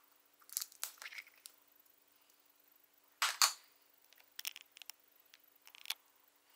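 A plastic jar of sugar body scrub being opened by hand: a few short crinkles and clicks of the lid and inner plastic film, the loudest crackle a little after three seconds in.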